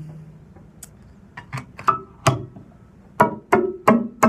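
A cable jack clicking into a cigar box guitar's piezo pickup, then a series of sharp knocks on the cigar box body picked up by the sensitive piezo and amplified, each with a short ringing.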